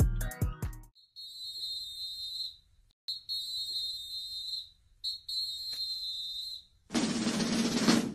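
A music track ends with a few drum hits, followed by three long, steady high whistle blasts with short gaps between them. A loud, drum-heavy music passage comes in near the end.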